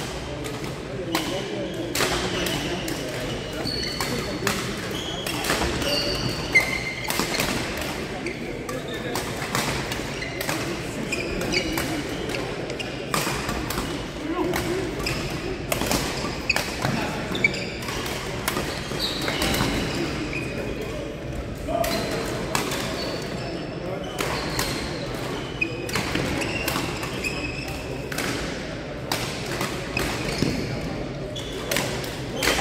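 Badminton rackets striking a shuttlecock in doubles rallies: sharp clicks at irregular intervals. Short high squeaks come from court shoes on the sports floor, under voices echoing in the hall.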